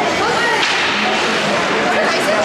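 Ice hockey rink din: many children's voices calling out over one another, with a sharp crack of a hockey stick on the ice or puck about half a second in.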